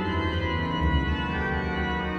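Pipe organ music: sustained chords held over a quickly moving bass line.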